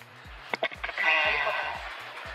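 Background music with a steady beat, with a hissing swell about a second in.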